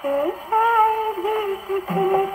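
A woman's singing voice from an old Hindi film song, playing from a record on a portable wind-up gramophone, with a thin, narrow sound and no deep bass or bright treble. A short phrase is followed by a long held note from about half a second in, which bends down near the end.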